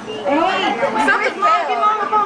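Several people's voices talking at once, mixed and not clearly made out.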